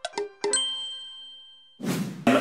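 Intro jingle: a few quick, chime-like plucked notes that end in a bright ding, which rings out and fades over about a second. Near the end, a short rush of noise comes in.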